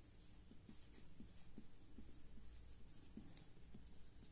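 Faint scratching and squeaking of a felt-tip marker writing a word on paper, in a series of short strokes.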